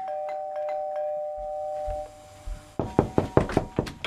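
Two-tone doorbell chime, its two notes held together for about two seconds before fading. Near the end comes a quick run of sharp thumps, about five a second.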